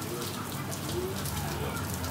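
Eatery background ambience: a steady hiss with faint voices of other people talking.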